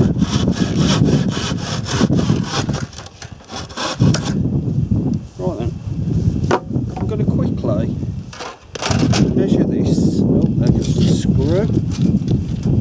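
Handsaw cutting through a softwood timber board in quick back-and-forth strokes, pausing briefly a few times.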